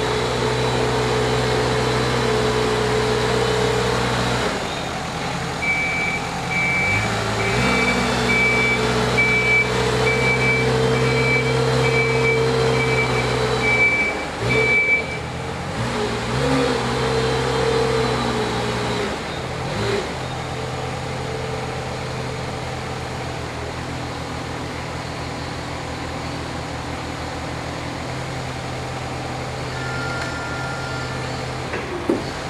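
Rough-terrain forklift engine running, its speed rising and falling as the machine manoeuvres. A reversing alarm beeps about twice a second for roughly ten seconds in the first half. From about two-thirds of the way in, the engine settles to a lower, steady idle.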